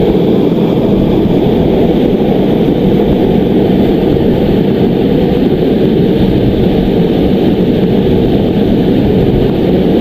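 A steady, loud rushing roar with no breaks or rhythm.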